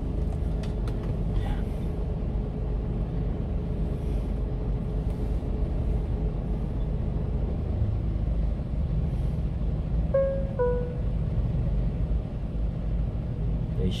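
Steady low rumble of a one-ton refrigerated truck's diesel engine idling while stopped in traffic, heard inside the cab. A short two-note falling chime sounds about ten seconds in.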